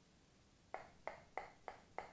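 Knife blade striking the painted hard-plastic body of a Strike Pro Montero 130 SP wobbler, five sharp clicks about three a second starting a little before halfway: a test of how well the lure's paint coating holds up.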